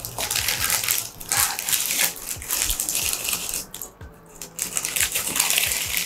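A thin plastic carry bag crinkling as it is handled and squeezed, a dense crackle with a short lull about four seconds in.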